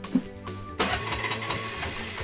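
Background music, with a short thump and then, about a second in, a brief noisy burst of an auto-rickshaw engine starting.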